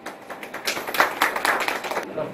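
A small group of people clapping by hand, irregular claps that start about a third of a second in and grow denser and louder.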